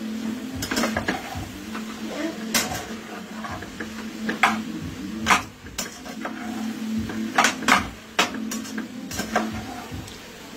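Metal spoon stirring ackee and chicken in a saucepan, clinking and scraping against the pot at irregular moments, about a dozen times, over a steady low hum.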